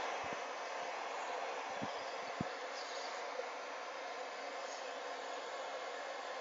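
Hands-free stand-mounted pet dryer blowing steadily, an even airy hiss, with a few faint soft knocks as a towel is worked over the wet dog.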